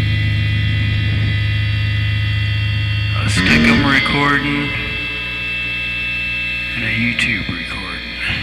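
Steady electrical mains hum for about the first three seconds, then short bursts of voice and music with a held high tone between them.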